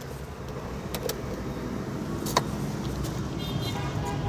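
Toyota Wigo's 1.2-litre four-cylinder engine idling steadily, heard from inside the cabin, with sharp clicks about a second in and a little after two seconds in from handling the interior.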